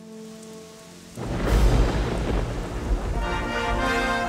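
A thunderclap rumbling in suddenly about a second in, settling into steady rain, over soft background music that grows fuller near the end.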